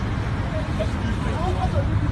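Steady low rumble of road traffic, with faint voices of people talking in the background.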